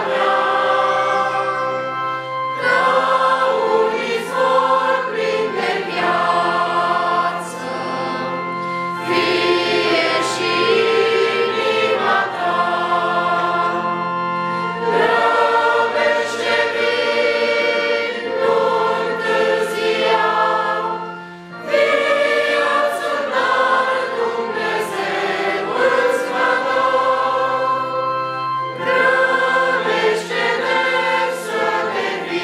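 Choir singing a hymn in long held chords, with a brief pause about 21 seconds in.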